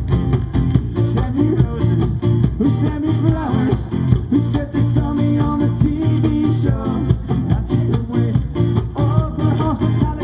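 Live acoustic folk song: a steel-string acoustic guitar with a capo strummed in a steady rhythm, with a man singing over it.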